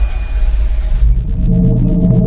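Logo outro music: a deep rumbling swell that gives way about a second in to held synth tones, with two short high chimes.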